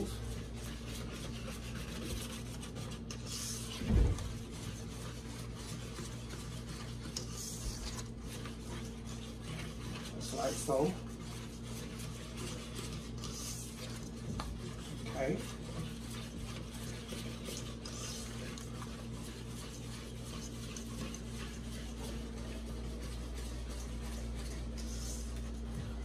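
Silicone spatula stirring and scraping a thick cream cheese, condensed milk and whipped-topping mixture around a metal mixing bowl as it is mixed until smooth. A knock about four seconds in, over a steady low hum.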